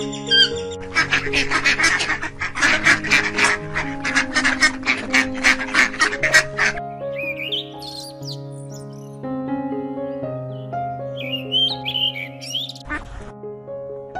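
Bird calls over background music: a fast run of harsh calls, about five a second, for the first half. In the second half a common blackbird sings a few whistled phrases.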